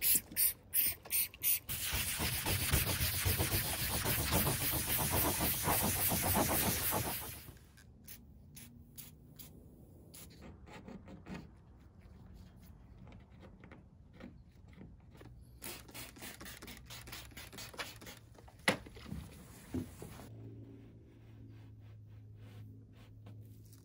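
Short bursts of spraying on a wet fibreglass rudder blade, then a few seconds of loud, steady spray hiss. After that, quieter scraping and scratching as old vinyl registration numbers and decals are scraped off a fibreglass hull, with a sharp click near the end and a low steady hum coming in at the very end.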